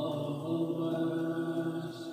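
Playback of a music recording: a steady, held chant-like drone of sustained notes, the pitch shifting just at the end.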